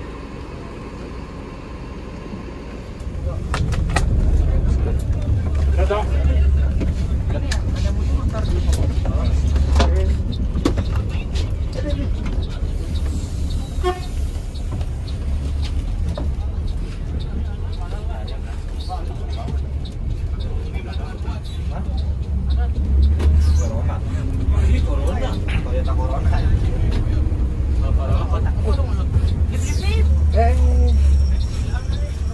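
Deep, steady rumble of a Mercedes-Benz OH 1526 tour bus's diesel engine, heard from inside the driver's cab as the bus drives off; it gets louder about three seconds in.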